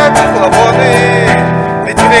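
Acoustic guitar strummed in a steady rhythm, with a man's voice singing along without clear words.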